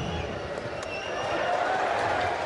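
Live football broadcast sound between commentary lines: steady pitch-side background noise with indistinct voices calling out on the field, after a sliding tackle leaves a player down.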